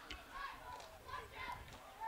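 Faint, distant voices of players and spectators calling out across an outdoor football field, with no close sound.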